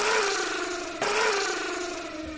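Toy poodle growling angrily, two growls with the second starting about a second in, each fading out: a dog that has snapped while guarding a baguette it snatched.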